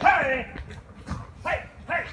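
A man's loud, short shouts of 'hey' driving off a brown bear. The first call falls in pitch, and a single sharp crack, a paintball gun shot, comes about a second in.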